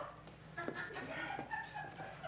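Faint, short voice sounds over a steady low room hum.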